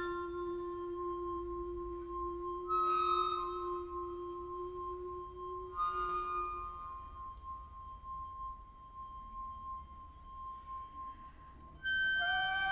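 Wine glass played by a finger rubbing its rim, singing one steady high tone that fades out just before the end, over a low held note that stops about seven seconds in. Brief high flute notes come in about three and six seconds in.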